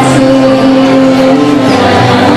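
Loud music with long held notes, played in a hall.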